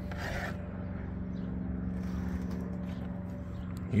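Electric fillet knife running with a steady buzz as its blades rasp through a white bass fillet.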